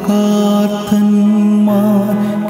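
A man's voice chanting long, held notes of a liturgical hymn over background music, with a short break near the middle.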